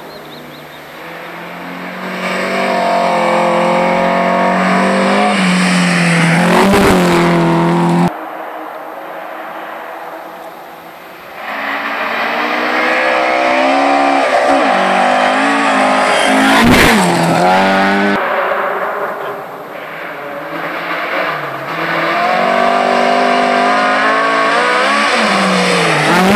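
Historic rally cars at full throttle on a gravel special stage, each one approaching with its engine revving hard, then passing close by with a rush of noise and a sudden drop in pitch. Two cars pass in turn, about 7 s and 17 s in, and a third is coming up loud near the end.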